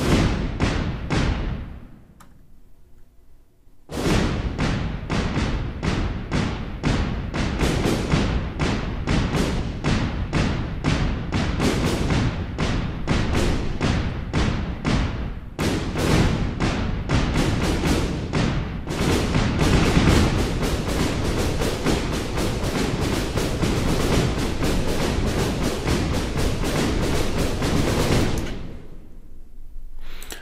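Deep toms, synth toms and snares from a drum resynthesizer playing a drum groove. Three hits open it, then after a short pause a dense, driving pattern runs from about four seconds in and fades out near the end.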